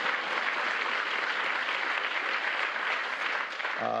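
Steady applause from an audience, many people clapping together.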